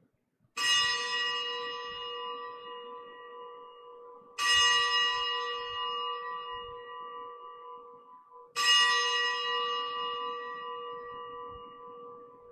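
A single bell struck three times, about four seconds apart, each stroke ringing on and fading before the next. It is the consecration bell rung at the elevation of the host during Mass.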